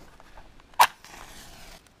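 A safety match struck against the side of its box: one sharp scrape less than a second in, followed by a brief faint hiss.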